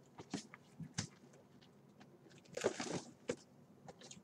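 Faint taps and clicks of cardboard boxes of trading cards being handled and shifted on a table, with a short rustle a little before three seconds in.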